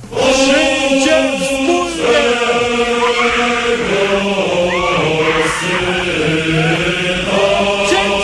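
Voices chanting in a hymn-like style, with long held notes and short sung phrases between them.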